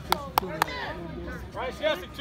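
Three sharp hand claps in quick succession, about a quarter second apart, in the first second, followed by distant shouting near the end.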